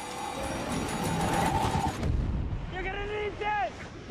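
Film trailer soundtrack: music swelling with a held note over a deep rumble, the note cutting off about two seconds in, then a voice calling out twice, each call rising and falling in pitch.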